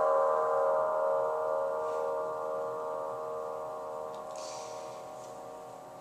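The final chord of the song's accompaniment ringing on after the last sung note, several steady notes held together and slowly dying away.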